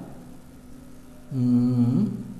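Quiet room tone with a faint steady hum, then, about 1.3 seconds in, a man's voice holding one drawn-out, level-pitched hesitation sound for under a second.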